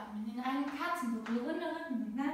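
A woman speaking, giving spoken yoga instructions.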